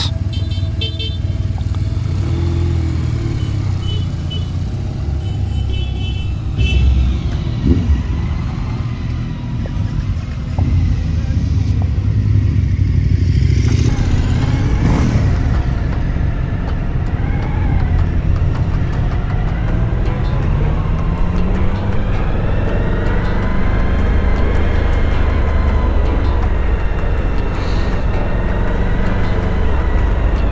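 Motorcycle engines running as a group of touring bikes pulls away, with one engine note rising about two-thirds of the way through. Background music comes in over the second half.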